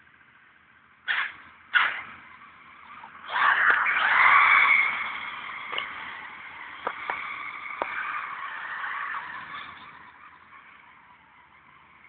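A buggy on the move: two short sharp sounds about a second in, then from about three seconds its motor noise comes in loud, peaks, and slowly fades away.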